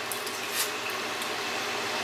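Steady sizzle of steaks frying in a pan, with a few short crackles.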